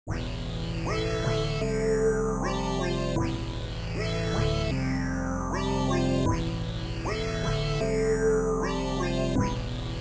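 Trap instrumental beat intro: a looped electronic melody with sweeping high tones over a held bass, the phrase repeating about every three seconds.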